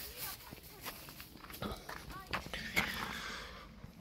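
Footsteps on gravel, a few irregular steps, with handling noise from the phone being carried.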